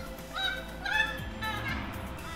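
A bird calling a few times in short pitched calls, over background music.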